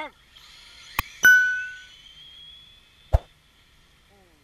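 Subscribe-button animation sound effect: a short pop, a mouse click about a second in, then a bell chime that rings and fades, and another click near the end.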